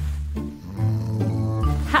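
Loud, exaggerated snoring from a sleeping woman over background music with steady low bass notes.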